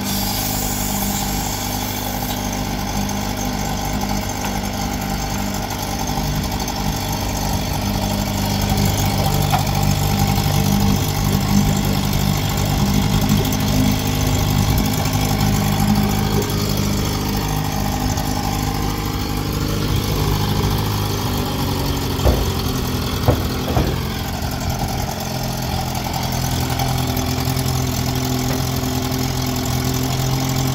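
1957 Johnson 7.5 hp two-stroke twin outboard running steadily at idle in a test tank. Its speed sags slightly about twenty seconds in, and a few short, sharp knocks come a couple of seconds later while it keeps running.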